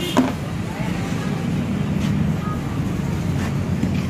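Steady low rumble of road traffic from the street beside the stall. A single sharp knock sounds just after the start.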